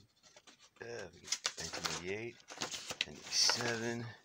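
A low man's voice humming or murmuring without clear words, in two stretches, with the rustle and clicks of binder pages in plastic sleeves being turned.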